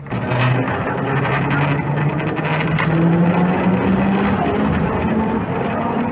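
N3 tram accelerating, its traction motors giving a whine that rises steadily in pitch for about four seconds and then levels off. Under it the old car's body rattles and the wheels run on the rails.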